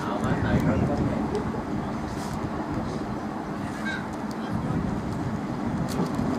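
Faint, indistinct voices of players calling on an open cricket field over a steady low rumble of outdoor background noise.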